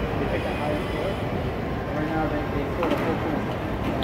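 Indistinct voices of people talking, over a steady hum of hall background noise.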